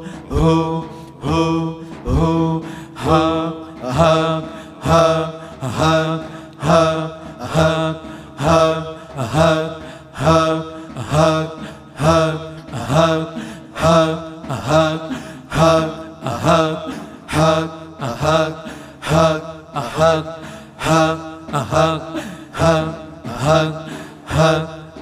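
Voices chanting Sufi dhikr in a steady, even rhythm, a breathy vocal pulse a little more than once a second, over a steady low held tone.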